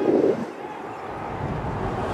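Open-air ambience of a sports field, with a louder swell of noise at the start that fades within half a second. Wind buffeting the microphone sets in with a low rumble after about a second.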